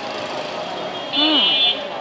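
Busy street-market ambience with murmuring crowd voices. About a second in, a short high-pitched electronic tone sounds for about half a second.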